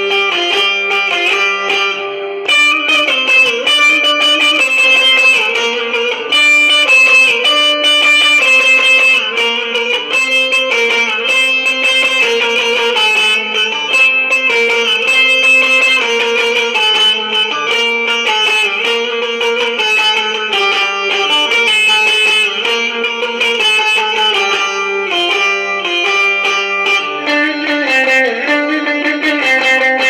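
Bağlama (long-necked Turkish saz) played with a pick: a sustained low note for the first couple of seconds, then a busy, quick plucked melody of many short notes, the instrumental opening before the song.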